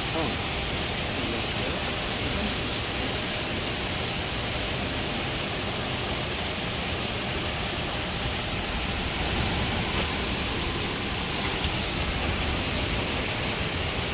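Torrential hurricane rain pouring down steadily, a dense, even hiss of water hitting pavement and a flooded pool.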